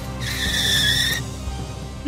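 Cartoon skid-to-a-halt sound effect: a high, steady screech lasting about a second, over background music.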